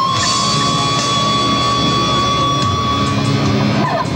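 Electric guitar holding one long high note that sustains for about three seconds, then slides down in pitch near the end.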